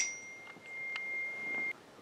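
Phone text-message alert: a single bell-like ding that rings on for about a second and a half, then stops.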